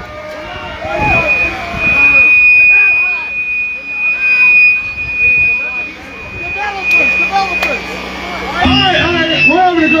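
A steady high-pitched feedback whine from the band's amplifiers, from about a second in until about six seconds, over people talking. Near the end a second high whine and lower steady tones come in.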